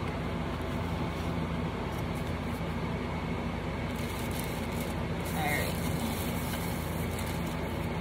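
Steady low hum of room noise, joined from about four seconds in by the crinkly rustle of a shopping bag being rummaged through.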